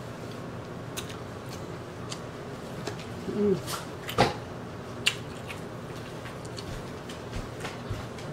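Close-miked chewing of crispy fried chicken: wet mouth clicks and small crunches at irregular moments, the sharpest just after the halfway point, with a short hummed "mm" shortly before it. Under it runs the steady hum of a room air conditioner.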